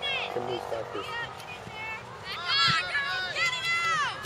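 Several high-pitched voices shouting and calling out at a distance, overlapping, sparse at first and busier from about halfway through.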